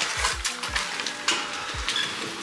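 Irregular crunching steps with several low thumps, over faint background music.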